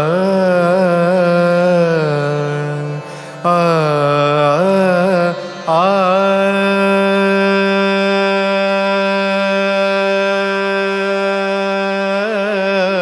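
Odissi classical song: a voice sings wavering, ornamented phrases with two brief breaks, then holds one long steady note through the second half.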